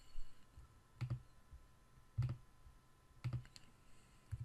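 Separate clicks of a computer mouse and keyboard, about five of them, roughly one a second, as a form is filled in by clicking through its fields and a drop-down list.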